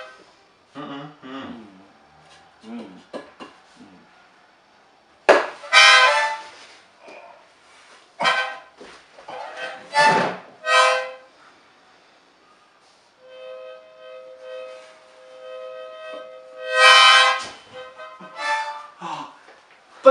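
A harmonica held in a person's mouth sounding short, loud chords several times as he breathes and cries out through it in pain. A steady chord is held for a few seconds past the middle. A sharp hit, a ping-pong paddle slap, comes just before the first loud chord.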